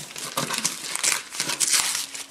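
Christmas wrapping paper being torn and crinkled off a gift box by hand, in irregular rips and rustles.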